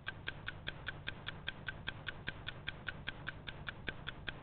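Clock ticking: quick, even ticks, about six a second.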